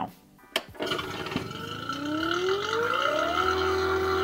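Vacuum pump starting with a click about half a second in, then running with a steady rushing hiss as it pulls a vacuum on a refrigeration system. Its note rises over about two seconds and then holds steady.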